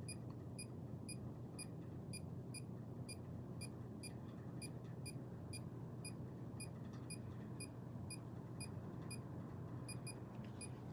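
Handheld EMF meter beeping quietly in short, even high-pitched pips, about three a second: its alarm going off at a high field reading. A faint steady low hum lies underneath.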